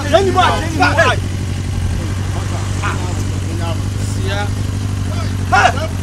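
A steady low engine-like hum runs under men's shouted speech, which comes in the first second and again briefly near the end.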